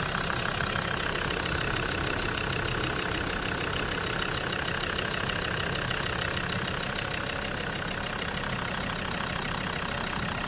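Land Rover Discovery's TD5 five-cylinder turbodiesel idling steadily with an even diesel clatter. It is running smoothly after a misfire repair, with no misfire.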